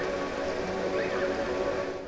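Forest stream and birdsong recording run through stacked reverbs, including a pitched reverb shifted down an octave. The water's rush becomes a smooth, steady drone of held tones over a soft hiss.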